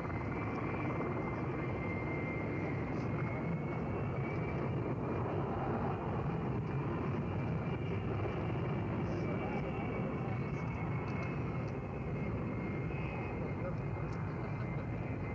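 Twin turbofan engines of a Beriev A-40 Albatros jet amphibian running at high power as it speeds across the water: a steady rushing noise with a thin, high, even whine.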